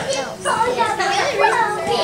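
Overlapping shouting and calling voices, children's among them, as spectators and coaches cheer on a kids' wrestling bout.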